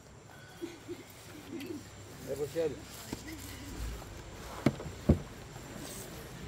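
Faint voices of people talking in the background, with two sharp clicks about half a second apart near the end.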